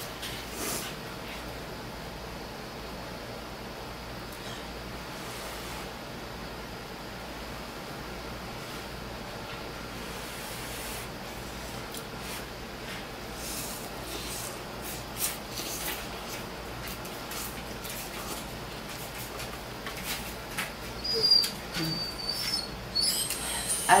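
Faint eating sounds: chopsticks stirring and clicking in a paper cup of instant noodles, then noodles slurped and chewed, over a low steady hum. Near the end a dog whines in a few short high cries.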